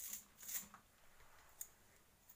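Near silence with a few faint, brief rustles: one near the start, one about half a second in, and a click-like one near the end.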